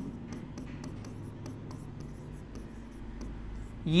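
Hand-writing on a board: a pen tip scratching out a word in short, irregular strokes.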